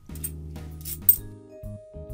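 Fifty-pence coins clinking against each other as they are slid through the hands, with one sharp clink about a second in, over steady background music.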